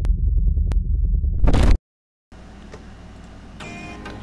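Electronic intro sting: heavy bass synth pulse with a sharp click, building into a rising whoosh that cuts off abruptly just under two seconds in. After half a second of silence, a quiet low hum follows, with faint music starting near the end.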